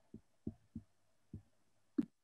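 About five short, faint low thumps, unevenly spaced, over an otherwise quiet video-call line.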